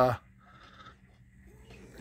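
A drawn-out hesitation "uh" in a person's voice trails off just after the start, then near silence with only faint soft noises.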